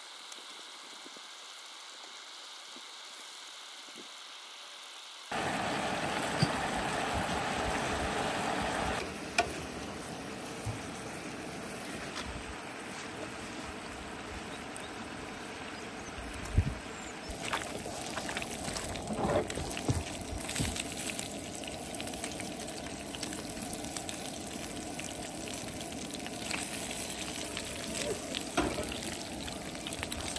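Bacon sizzling in a frying pan on a propane camp stove: a steady hiss, quieter for the first five seconds and louder after that, with scattered light clicks.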